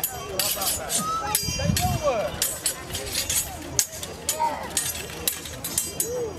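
Steel longswords clashing blade on blade in a staged fight: a series of sharp, ringing strikes spaced irregularly through the few seconds, with crowd voices murmuring underneath.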